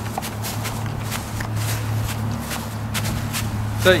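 Footsteps on dry, dormant zoysia grass, about two or three steps a second, over a steady low hum.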